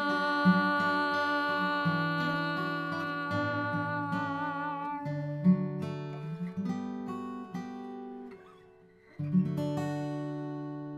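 Steel-string acoustic guitar under a woman's long held sung note, which wavers with vibrato and ends about five seconds in. The guitar then picks a few notes alone and fades almost to silence. One last plucked chord near the end is left ringing, closing the song.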